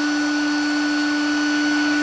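Lite-On 12 V server power supply running with a centrifugal blower fan wired to its output: steady fan noise with a constant low whine and fainter high tones, no change in speed.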